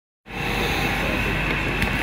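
Steady hum of office background noise with a faint high whine, starting abruptly a moment in. A few light clicks come near the end.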